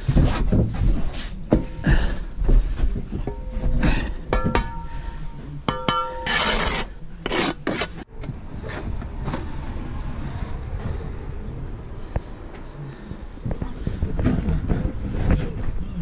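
Masonry work on heavy aggregate concrete blocks: a trowel scraping mortar and knocking a block down into its bed, with a couple of short ringing metal taps about a third of the way in and a harsh rasping scrape just after. Past the middle the knocks stop and a steadier, quieter background noise remains.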